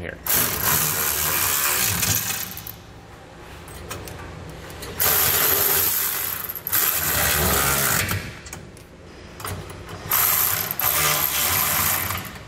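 Cordless ratchet with a 3/4-inch socket running nuts down onto bolts. It runs in four bursts of one to two and a half seconds, with short pauses between them.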